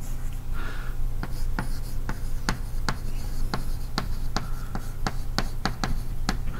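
Chalk writing on a blackboard: an irregular run of sharp taps and short scratches as each letter is stroked on, over a steady low hum.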